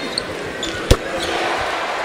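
A basketball bounces once on the hardwood court about a second in, a sharp single thud. After it the arena crowd's noise builds as a three-pointer drops.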